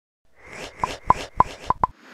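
Animated-intro pop sound effects: five quick cartoon pops, each with a short ringing tone, over soft upward swishes. The pops begin just under a second in and come closer together near the end.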